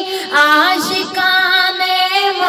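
A high solo voice singing an Urdu naat with long, drawn-out melismatic notes. A new phrase slides upward about half a second in. A steady drone runs underneath.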